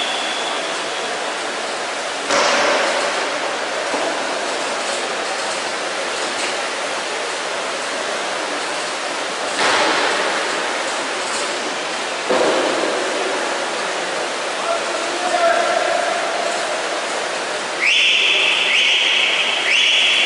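Reverberant indoor swimming-pool hall ambience: a steady wash of spectators' voices and splashing water from the racing swimmers. It jumps suddenly louder a few times, and a high steady tone starts near the end.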